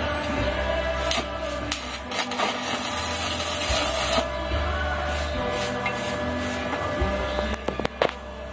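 Stick-welding arc on a steel frame, crackling and hissing for about three seconds from about a second in, with sharp clicks as the arc is struck and broken.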